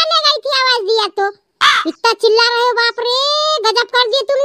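A high-pitched cartoon character's voice talking quickly in a sing-song way, sped up and pitched well above a normal adult voice. About one and a half seconds in, the talk breaks for a short noisy burst.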